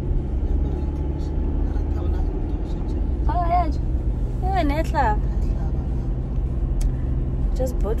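Steady low rumble of a car's engine and tyres heard from inside the cabin while driving. About three seconds in, two short high-pitched vocal sounds rise and fall over it.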